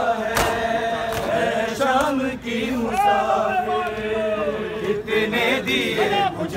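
Men's voices chanting a noha together in a group, over several sharp slaps of hands striking bare chests in matam.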